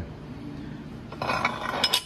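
Steel connecting rods clinking and scraping against each other as they are handled, with a few sharp clinks near the end.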